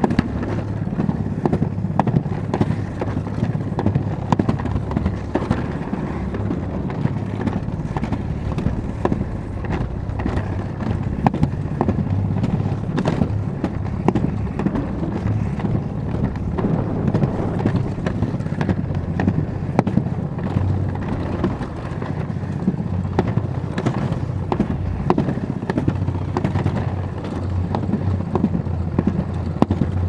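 Alpine slide sled running down its concrete track: a steady rumble with frequent sharp clicks and knocks throughout the ride.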